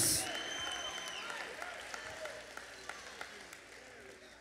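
Church congregation clapping and calling out in response to the sermon, dying away over a few seconds, with a high tone held for about a second near the start.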